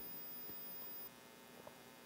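Faint steady electrical hum with a thin high whine that cuts off about a second in; otherwise little more than room tone.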